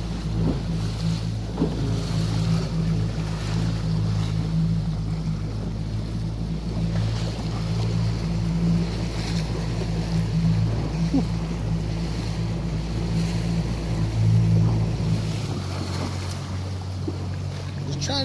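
Yamaha outboard motor on a Boston Whaler running steadily under way, with water rushing past the hull and wind on the microphone. About fifteen seconds in, the engine note changes and its lowest hum drops away.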